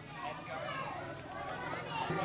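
Children's voices and chatter from a group of kids, with no clear words.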